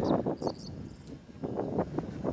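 A wind turbine tower's door swinging open and a person's footsteps as they step through it, a run of irregular scuffs and knocks.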